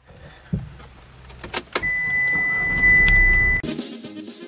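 Inside a car: a few sharp clicks and jangling keys, then a low engine rumble with a steady high beep lasting about two seconds. The sounds cut off abruptly near the end.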